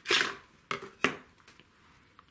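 A short rustle, then two light plastic clicks about a third of a second apart, as a clear acrylic quilting ruler from the Tri-Recs set is handled over a paper pattern sheet.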